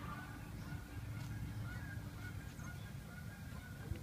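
Faint bird calls, short scattered calls over a steady low outdoor rumble.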